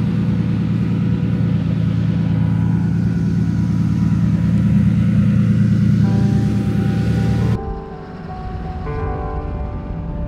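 Modified drift cars idling together, a steady, deep engine note. Music comes in about six seconds in, and the engine sound cuts off suddenly shortly after, leaving only the music.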